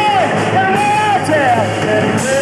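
Live power-pop band playing: a male lead vocal holds and bends sung notes over electric guitar and drums.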